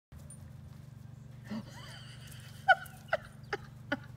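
A dog barking in play: four short, sharp barks over the last second and a half, the first the loudest, over a steady low hum.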